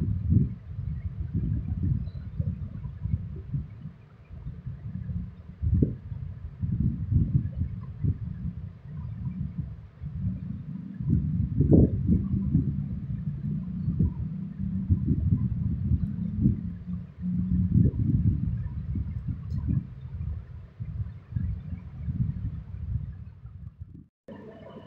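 Irregular low rumbling noise on the microphone, swelling and fading every second or so, like air buffeting the microphone.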